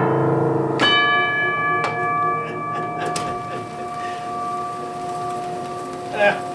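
American Photoplayer closing a piece: a last chord, then about a second in a bell struck once and left to ring, fading slowly over several seconds, with two lighter strikes after it.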